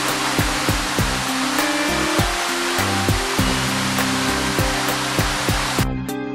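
Steady rushing roar of a tall waterfall heard from the trail behind the falling water, with background music of steady plucked notes over it. The water noise cuts off just before the end, leaving only the music.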